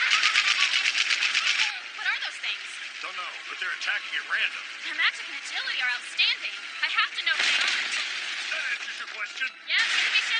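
Animated battle sound effects: a rapid burst of repeated shots or impacts for about the first second and a half, then scattered hits with wordless shouts and grunts. The sound is thin, with no bass.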